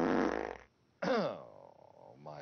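A man's voice making silly nonsense noises instead of words: a short buzzing vocal sound at the start, then about a second in a second sound that slides down in pitch and trails off.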